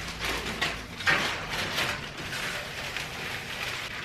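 A thin plastic bag being handled and crinkled: an irregular rustling with small crackles, loudest about a second in.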